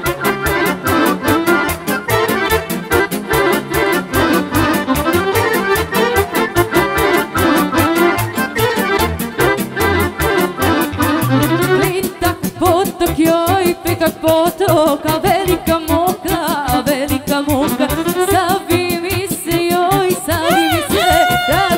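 Live Serbian folk band playing fast dance music with a steady driving beat, the accordion carrying the tune and a violin in the band. About twelve seconds in, the bass thins and a wavering melody line comes forward.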